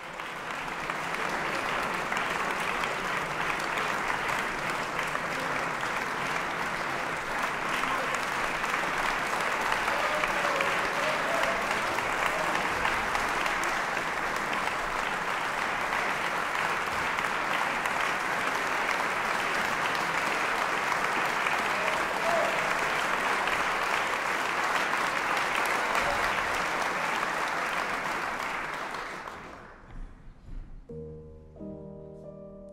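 Concert audience applauding steadily, dying away near the end.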